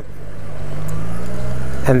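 Honda NC700X's 670 cc parallel-twin engine running at low speed through a helmet camera's microphone, its level rising gently in the first second.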